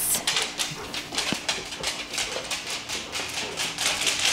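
Dogs' claws clicking on a hard wood-look floor as a Labrador and a German Shorthaired Pointer walk and trot about, in quick, irregular ticks, several a second.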